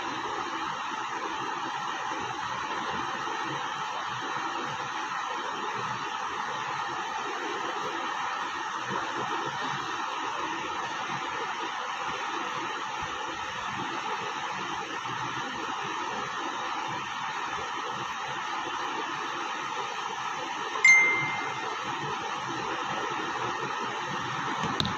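Steady background hiss with no speech. Near the end comes a single bright ding that rings out over about a second.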